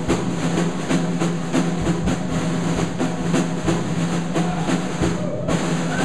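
Drum kit keeping a steady Dixieland beat on snare and bass drum, about three to four hits a second, over held low notes from the band's rhythm section, with no horns playing yet.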